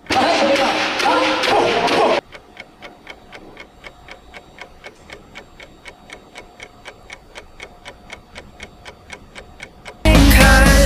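Concert fancam audio of crowd noise and voices that cuts off abruptly about two seconds in. Then a faint, even clock-ticking sound effect follows, about three ticks a second.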